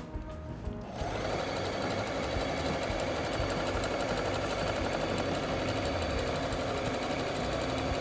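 Singer Patchwork electronic sewing machine stitching fast with its speed control turned up, starting about a second in and running at a steady rate.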